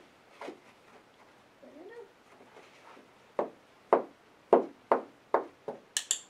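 Dog thumping against a carpeted floor while lying on its side and rolling, about six dull thumps roughly half a second apart in the second half. A short rising-and-falling whine comes earlier. A sharp training-clicker click at the very end marks the moment she puts her head all the way down.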